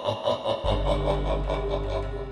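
An intro sound effect trails off, and about half a second in a low, steady dark drone begins: the start of an eerie horror music bed.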